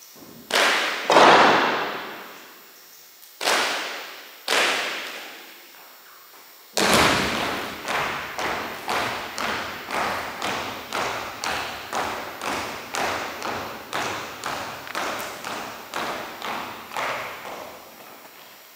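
Sharp drill strikes made in unison by a drill team, ringing in a gymnasium: two loud strikes near the start, two more a few seconds later, then an even series of about two strikes a second.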